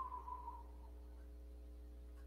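Quiet room tone with a steady low hum. A faint tone falls slightly in pitch and fades out within the first second.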